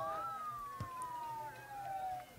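A fairly faint siren in a slow wail. Its pitch peaks just after the start, then glides slowly down through the rest.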